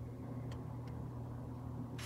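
Quiet room tone: a steady low hum with one faint tick about half a second in.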